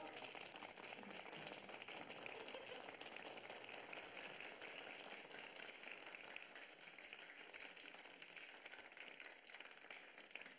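A small group of people applauding with steady clapping that grows a little quieter toward the end.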